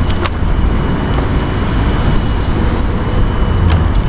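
Steady low outdoor rumble, with a few faint clicks.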